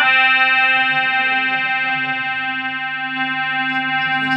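A single chord held steady on a keyboard instrument in the stage band, one sustained tone rich in overtones that eases off slightly in level.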